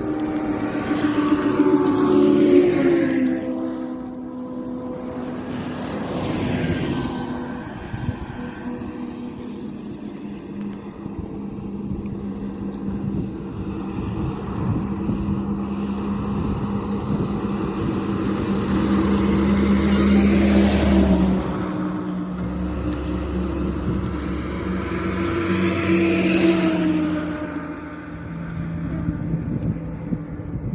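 A motor vehicle's engine running steadily nearby, with several vehicles passing by on the road, each swelling and fading, the loudest about two seconds in and again around twenty and twenty-six seconds in.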